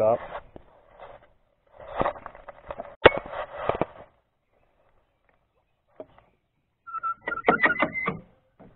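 Clanking and rattling of a Mercury 15 hp tiller outboard being tilted up on its transom mount, with a sharp click about three seconds in. After a quiet spell, more clatter comes near the end.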